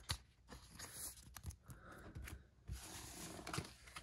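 Pokémon trading cards being handled and set down on a desk: faint soft taps and paper-like rustles, with a few sharp little clicks.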